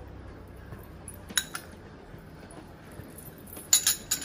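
Metal spoon clinking against a ceramic bowl as salt is scooped and sprinkled: one sharp clink about a second and a half in, and a few more near the end.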